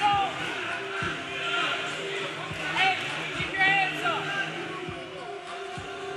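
A few dull thuds from a boxing ring where two heavyweights are fighting, over voices shouting at ringside in a large hall.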